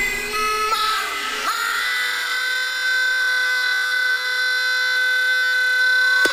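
Hardstyle track in a breakdown: the kick drum and bass drop out, leaving sustained high synth tones. One lead tone slides up in pitch about a second in, then holds steady.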